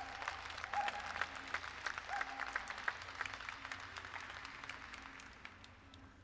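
Spectators clapping, starting just before and fading away over about five seconds, with a few brief cheers in the first couple of seconds.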